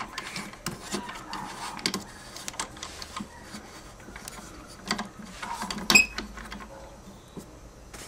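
Small clicks and rattles of a ball-type tripod head being turned and fitted by hand onto a wooden block, with one sharp metallic click and a brief ring about six seconds in.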